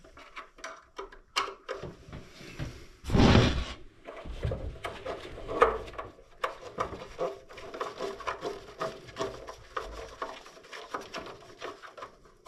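Gloved hands working the wiring inside the open electronics compartment of an electric water heater. Many small clicks and rattles of plastic parts and wires, with a louder burst of rubbing noise about three seconds in and a sharp knock in the middle.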